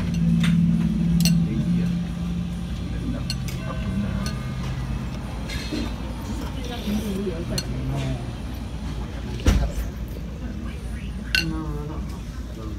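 Spoon and chopsticks clinking against ceramic soup bowls in short, scattered taps, with a louder knock about three quarters of the way through, over background chatter in a restaurant dining room.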